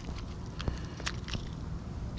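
A few faint clicks and rattles of fingers picking through a small plastic tackle box compartment of hooks and weights, over a low steady background rumble.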